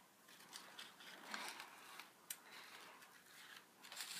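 Near silence with faint handling noise: soft rustles and a few light clicks.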